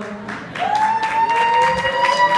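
Audience applauding. About half a second in, a steady held tone comes in under the clapping and keeps sounding.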